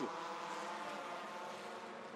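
Engines of a pack of Formula 1600 single-seater race cars running together on track, several engine notes heard at once and fading slightly.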